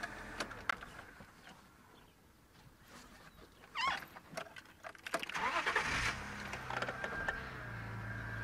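An African wild dog gives a short rising contact call, the call of a dog separated from its pack trying to find the rest of the group. About two seconds later a vehicle engine starts and runs steadily.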